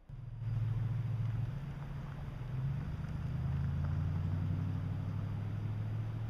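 A low, steady engine drone that starts abruptly and holds, its pitch shifting slightly partway through.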